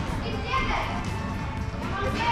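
Children's voices and shouts ringing through a large indoor hall, over background music.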